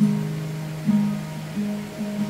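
Acoustic guitar strummed, three chords about a second apart, each left to ring and fade.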